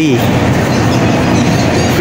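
Loud, steady vehicle noise without a clear pitch, with no break or change.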